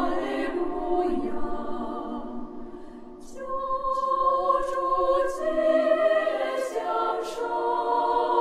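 Women's choir singing a Chinese-language Christmas hymn in several parts, holding long chords. The phrase dies away about two to three seconds in, and a new phrase starts at about three and a half seconds.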